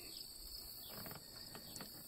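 Faint, steady high-pitched trilling of crickets, with a few faint ticks.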